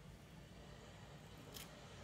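Near silence: room tone with a low hum and one faint, brief scratch about one and a half seconds in.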